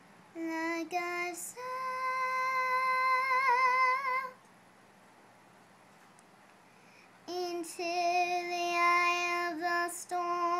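A young girl singing unaccompanied: two phrases of long held notes with vibrato, about three seconds of silence between them.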